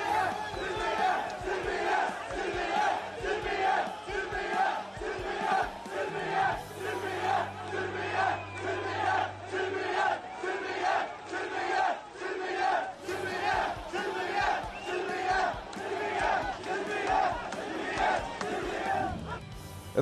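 A large crowd of protesters chanting in unison: one short shouted phrase repeated in an even rhythm, a little more than once a second.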